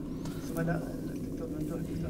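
Faint man's speech, low and muffled in the mix, between louder spoken sentences.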